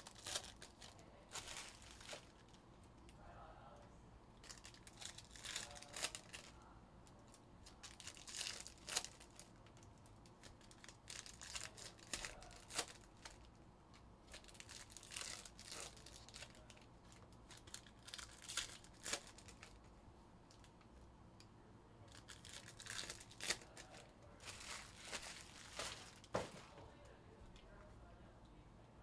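Trading-card pack wrappers being torn open and crinkled by hand. The sound comes in short bursts of rustling and crackling every two to three seconds and is quiet overall.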